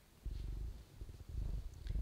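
A low, uneven rumbling noise in two stretches, starting about a quarter second in and again after about a second.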